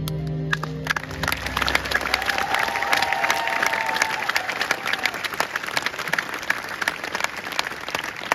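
Audience applause at the end of a live song: the last sustained chord dies away about a second in as clapping breaks out and carries on. A single cheer rises over the clapping about three seconds in.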